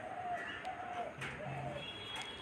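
Faint bird calls, several short notes in a row.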